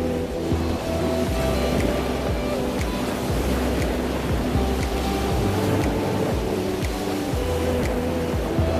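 Background music: a slow melody of held notes over a deep bass, with a steady noisy wash under it.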